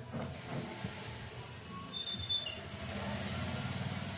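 A USB pen drive pushed into the USB slot of a TV main board, with a few faint clicks over a steady low hum.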